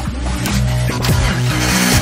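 Electronic dance music with a heavy bass line and a drum beat, building with a rising swell near the end.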